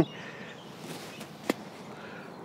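A sand wedge striking bunker sand once on a swing with no ball, a single short, sharp hit about a second and a half in.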